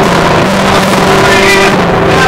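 Acoustic guitar strummed loudly in held chords, with a harsh, distorted edge.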